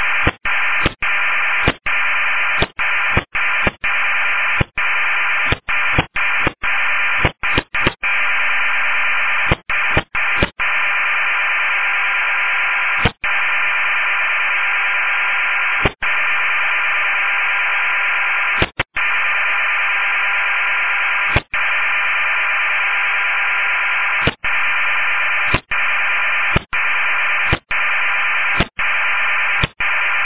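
Loud, steady FM radio hiss received on a PMR 446 channel, limited to the radio's narrow audio band. It is broken by many short dropouts, close together in the first ten seconds and then about every two to three seconds.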